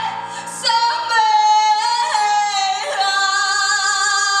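A woman singing solo into a microphone, holding long high notes; after a short break about half a second in, the sustained notes step down in pitch.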